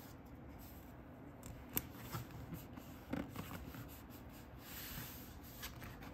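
Fingers handling a paper sticker and rubbing it onto a colouring book page: faint scratching and rustling of paper, with a small sharp tick about two seconds in.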